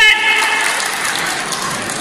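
Audience clapping in a hall, an even clatter that slowly eases, just after an amplified voice on the PA finishes a word.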